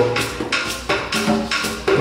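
Hand drums and percussion playing a rhythm, with sharp strokes several times a second.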